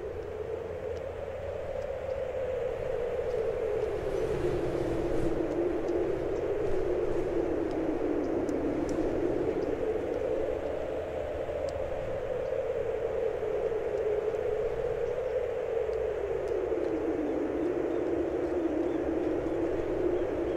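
A steady rushing noise, slowly rising and falling in pitch, over a low rumble.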